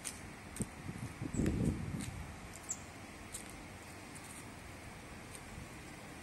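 Footsteps on concrete and handling bumps picked up by a phone's built-in microphone: a few scattered light taps and a brief low rumble in the first two seconds, then only a steady faint outdoor hiss.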